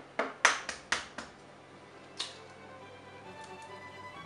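An egg being cracked: about five sharp taps of the shell against a hard surface in quick succession in the first second, then one more about two seconds in.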